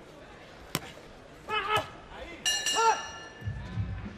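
Ringside sound of a boxing bout: a single sharp crack about a second in, two short shouted calls, and a brief metallic ringing that fades over about a second.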